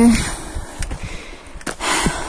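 Footsteps on a loose, stony path, with a heavy breath near the end from someone worn out by a steep climb.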